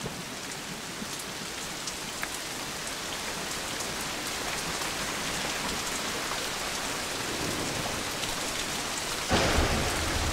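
Heavy rain falling steadily and growing slowly louder. Near the end a sudden, louder deep rumble of thunder sets in.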